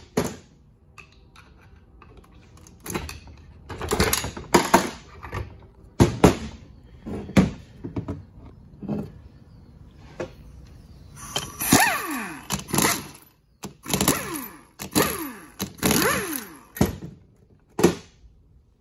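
Irregular metallic clanks and knocks of a 4L60E transmission's front pump being pulled out of the case and set down on a steel workbench, busiest in the second half.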